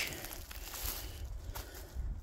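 Footsteps crunching and rustling through thin snow over dry fallen leaves.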